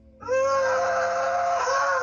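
A boy's long, steady, high-pitched wailing cry during an emotional outburst, starting a moment in and lasting about two seconds, heard over a video call.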